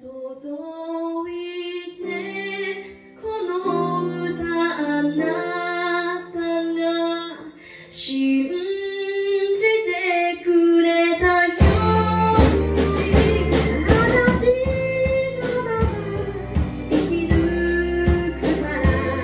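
A woman singing a slow pop ballad into a microphone, accompanied by keyboard and bowed cello. About eleven and a half seconds in, the drums and the rest of the band come in, and the music gets fuller and louder.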